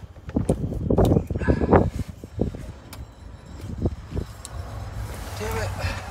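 Scattered clicks and knocks of hands working the plastic connectors of the gateway computer behind the cargo-area trim panel, over a steady low wind rumble on the microphone.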